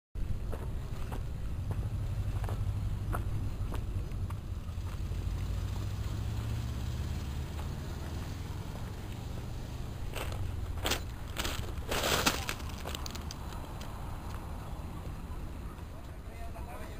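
Low steady rumble of wind on the microphone, with scattered clicks and a few louder crackling bursts of noise about ten to twelve seconds in.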